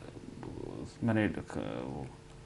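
A man speaking Bengali hesitantly: a low, rough murmur, then the filler word 'mane' about a second in.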